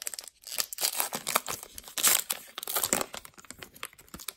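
A baseball card pack's wrapper torn open and crinkled in the hands, in irregular bursts of crackling.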